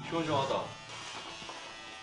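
Electric hair clippers buzzing steadily as they shave hair off a man's head.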